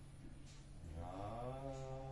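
Men chanting a naam, the devotional chant of Hari's name in Assamese Vaishnavite worship. The chant drops away briefly at the start, then a long sung line rises back in about a second in and is held, over a steady low hum.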